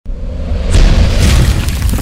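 Cinematic boom sound effect from an animated logo intro: a deep rumbling impact that hits hardest about three quarters of a second in, with a rushing, crumbling debris sound over it as the wall breaks open.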